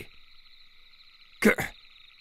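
A steady, high-pitched chorus of frogs as a continuous nature-ambience bed, with one short vocal sound about one and a half seconds in.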